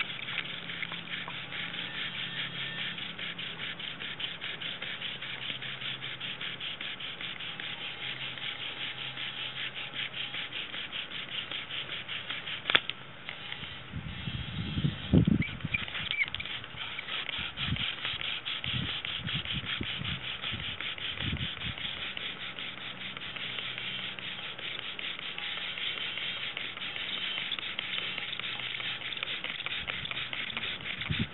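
Bow drill spindle spun back and forth into a hearth board of artist's conk fungus (Ganoderma applanatum): a steady, fast rubbing and squeaking of wood on dry fungus as friction builds toward an ember. It breaks off briefly about 13 seconds in, and a few low thuds come through the middle stretch.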